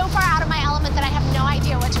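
Motorboat engine running with a steady low drone under a woman's speech.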